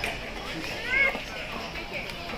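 Background voices of shoppers and children, with one high child's call rising and falling about a second in.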